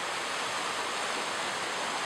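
Rushing stream water: a steady, even wash of whitewater.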